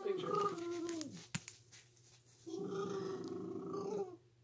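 Husky-type puppy vocalizing: a drawn-out, howl-like call that falls in pitch, a short click, then a second, steadier call of about a second and a half.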